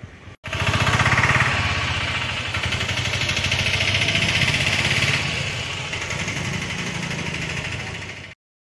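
Small engine running steadily close to the microphone with a fast, even chugging. It cuts in suddenly after a short gap near the start.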